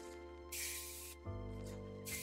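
One short spray from a hair-product spray bottle onto the hair, a hiss of under a second starting about half a second in, over soft background music.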